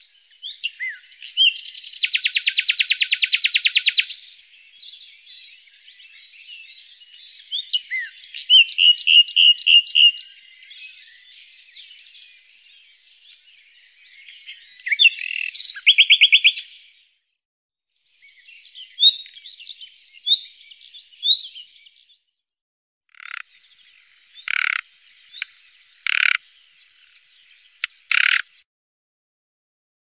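Common nightingale singing: phrases of very fast repeated notes and short whistles, broken by pauses. The song ends in a slower run of five separate short notes.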